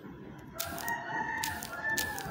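A rooster crowing once: a single drawn-out call that starts about half a second in and lasts about two seconds.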